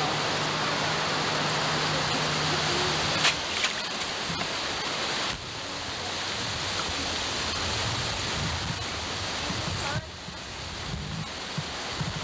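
Steady rushing of flowing creek water, with a couple of brief clicks about three seconds in.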